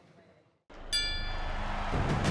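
Faint room tone dies to silence, then a broadcast transition sting comes in: a swelling whoosh and, about a second in, a bright ringing metallic hit that holds on as music.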